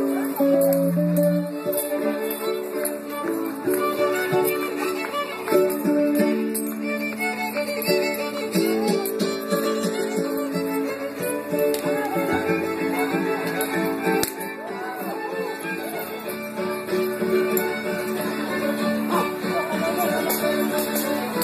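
Live string band music: a violin carrying the melody over strummed guitar, played through PA speakers.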